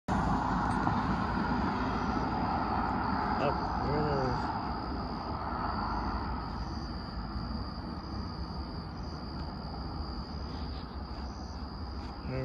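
A car drives over the crossing and away, its tyre and engine noise loudest at first and fading over the first several seconds. A steady high insect trill runs underneath, and a brief voice is heard about four seconds in.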